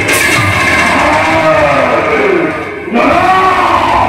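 A performer's loud, drawn-out stylized vocal declamation, the voice sweeping slowly up and down in pitch with a brief break near three seconds in, over the bhaona's instrumental accompaniment.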